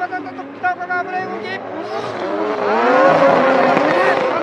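Two drift cars' engines, a Mazda RX-7 (FD) among them, revving hard in a tandem slide, their pitch rising and falling and loudest about three seconds in.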